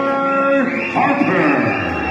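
A male ring announcer's voice over the hall's PA, drawing out long held syllables as he finishes introducing a fighter.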